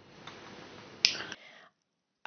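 A single sharp click about halfway through, over faint room noise, after which the sound cuts off to dead silence.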